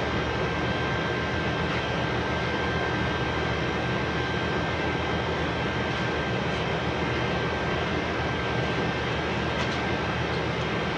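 Steady machine noise: a constant drone with a thin high whine running through it, unchanged throughout.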